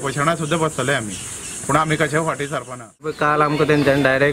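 Men speaking: one man talks with a short pause about a second in, then an abrupt cut near the three-second mark to another man speaking. A steady high hiss runs under the first man's speech and stops at the cut.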